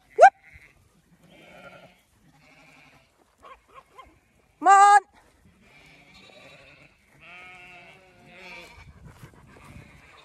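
Zwartbles sheep bleating: one loud, short bleat about halfway through, with fainter bleats from further off before and after it. Right at the start there is a brief, sharply rising call.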